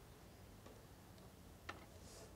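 Near silence: quiet room tone with a few faint clicks, the clearest about one and a half seconds in.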